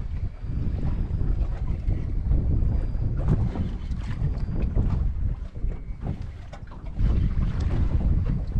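Wind buffeting the microphone on an open boat at sea: a low, gusty rumble that eases for a second or so past the middle. A few faint clicks sound over it.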